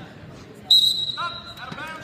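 Referee's whistle blown once, a sharp, steady high note lasting about a second, stopping the wrestling action. Raised men's voices shout over its end.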